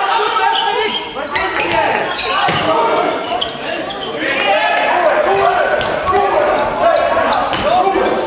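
Handball match in a sports hall: players and spectators shouting and calling over one another, with a handball bouncing on the court floor now and then, all echoing in the hall.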